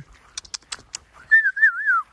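A person whistling a short warbling call to bring dogs out, the pitch wavering up and down three times and dropping at the end. A few short clicks come just before it.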